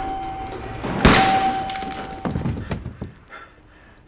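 A single loud gunshot about a second in, with a decaying tail, over a steady high tone that stops just after two seconds; a few fainter knocks follow.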